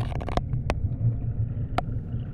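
Underwater sound picked up by a submerged camera in fountain water: a steady low rumble with a few sharp clicks.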